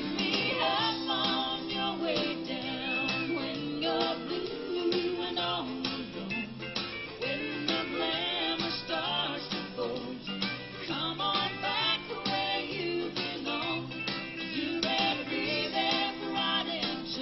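A recorded country song playing, a woman singing over guitar and band with a steady beat.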